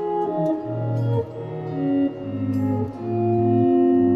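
Electric guitar playing a run of held chords, each ringing on until the next, changing roughly once a second.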